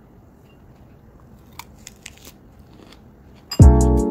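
Faint crunches of someone eating a lettuce salad with a fork, a few short crisp bites and clicks about halfway through. About three and a half seconds in, loud music with a heavy bass beat comes in.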